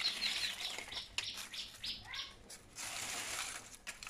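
Dry leaves rustling and crackling in several short, irregular spells as they are spread by hand over a soil bed as mulch.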